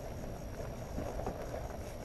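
Wind rumbling on the microphone, with faint rustling of a fabric heated pants liner being handled.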